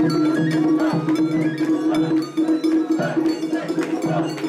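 Japanese festival music with a high flute melody stepping between notes over a steady, rhythmically pulsing low drone, punctuated by repeated bright metallic clanks. The carriers shoulder and jostle the gilded mikoshi amid this music.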